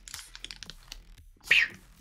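Foil wrapper of a Pokémon trading-card booster pack crinkling and rustling as it is torn open and the cards are slid out, with quick small clicks and a sharper, louder crinkle about one and a half seconds in.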